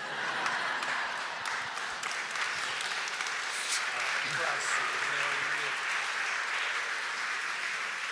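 Audience applauding, a steady dense clapping that starts at once and keeps on evenly.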